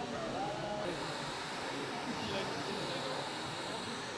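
Indistinct chatter of several people talking at once in a busy room, with no single voice standing out.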